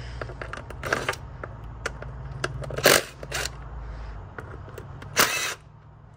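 Cordless impact driver run in short bursts, about three times, loosening the ignition coil hold-down bolts on a Toyota V6, with small clicks of the socket and tool between bursts; the last burst is the longest, about half a second.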